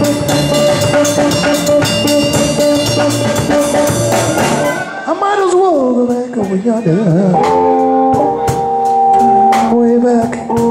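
Live band music: a tapped Stick-style string instrument over a drum kit keeping a steady beat. About halfway through it cuts to another song, where a man sings long gliding notes over held tapped chords, and the drums come back in near the end.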